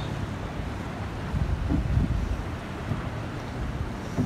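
Wind buffeting the microphone: an uneven low rumble that swells louder between about one and two seconds in.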